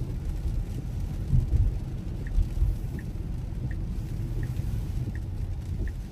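Low, steady rumble of tyres on a rain-soaked road and rain on the car, heard from inside the cabin of a Tesla. From about two seconds in, the turn-signal indicator ticks faintly and evenly, about every three-quarters of a second, ahead of a left turn.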